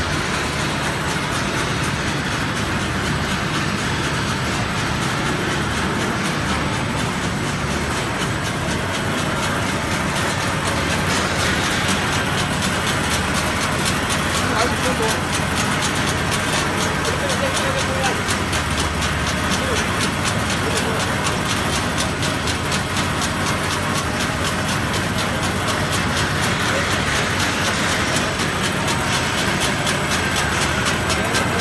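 Food production line running: wire-mesh conveyor belts and a granola-sprinkling spreader make a steady mechanical din with a low hum and a fast, fine clatter.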